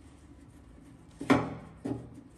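Screwdriver working a screw out of a car antenna base on a steel fender: quiet turning, then two short metal clicks about half a second apart, the louder first one a little past halfway.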